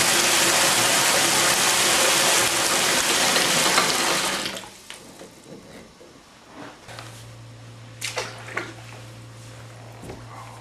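Bathtub filling from a tap, a steady loud rush of water that stops about halfway through. After it, a low steady hum and a few faint knocks.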